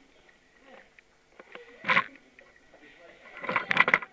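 Scattered voices from a group standing in a hall: mostly quiet, a short sharp vocal sound about halfway through, and a louder burst of chatter near the end.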